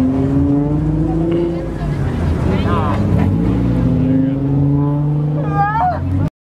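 A race car's engine running at low speed, its note rising gently a couple of times as it creeps forward. Crowd voices, laughter and shouts sound over it.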